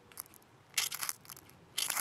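A ferrocerium fire steel struck with a metal striker, rasping out showers of sparks onto cotton tinder: two strong strikes about a second apart, the last of them lighting the tinder.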